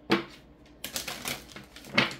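A deck of tarot cards being shuffled and squared by hand: a quick run of crisp card clicks and snaps, ending in a sharper tap as the deck is knocked square.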